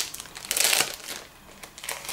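Foil packets holding promotional toys crinkling as they are handled. The loudest burst comes about half a second in, then softer rustling follows.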